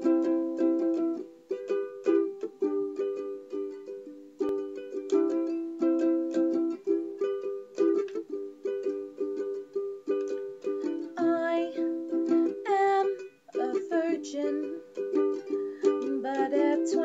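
Ukulele strummed in a steady rhythm of repeated chords, playing a song's instrumental introduction.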